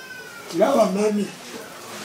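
A short, wavering, meow-like vocal call about half a second in, rising and falling in pitch for under a second.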